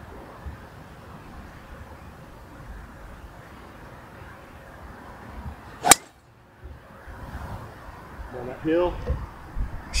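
A driver striking a golf ball off the tee: one sharp crack about six seconds in. Steady wind noise on the microphone runs underneath.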